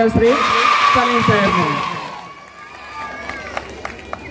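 Audience applause with a few voices through it, fading out over about two seconds.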